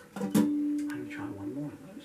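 Acoustic guitar struck once about a third of a second in, the note ringing for about a second as it fades.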